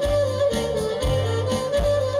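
Live Greek folk (dimotiko) band playing dance music: a held melody line that steps up and down over a steady bass beat.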